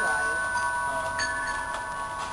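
Several steady, overlapping chime-like ringing tones, with faint voices underneath.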